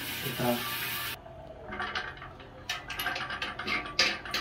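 Water spraying from a shower head into an empty stainless steel sterilizer drum, which cuts off suddenly about a second in. Light metallic clicks and clinks of the drum being handled follow, more frequent near the end.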